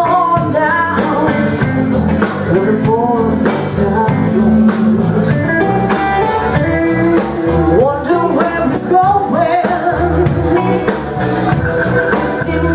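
Live blues band playing a song: a woman singing over drums and band backing.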